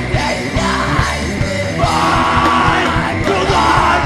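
Punk rock band playing live: electric guitar and drums driving hard, with the singer yelling into the microphone and holding long yelled notes in the second half.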